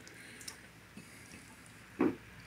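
Faint soft wet squishes and small drips as cooked chicken is torn into shreds by hand and dropped into a pot of broth, with a few light ticks about half a second and a second in.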